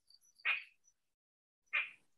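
A pause in speech filled by two short, soft breaths from a man, one about half a second in and one near the end, with faint high-pitched chirps in the background.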